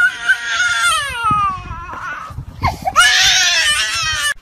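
A small child crying and screaming in fright while running: a long, high wailing cry that dies away about halfway through, then a louder, shriller scream from about three seconds in.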